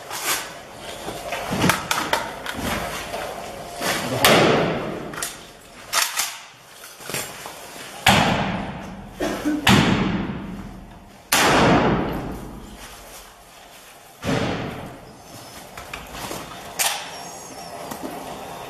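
Gunfire during a firefight: about a dozen shots, single and in short bursts, spaced irregularly, each ringing off with a long echo through the surrounding buildings.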